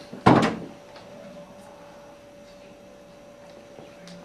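A single thump about a quarter second in, dying away quickly, followed by quiet room tone with a faint steady hum.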